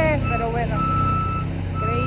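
Aerial boom lift's motion alarm beeping in a steady high tone over the low, steady running of its engine.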